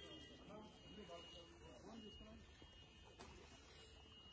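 Faint, indistinct voices of people talking, with a thin steady high tone behind them.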